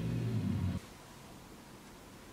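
A low, steady hum that stops abruptly just under a second in, leaving only faint room noise.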